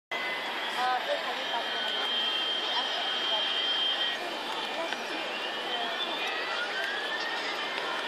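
Steady outdoor background noise with faint voices near the start. A high tone is held for a couple of seconds, and then a slow rising whine follows.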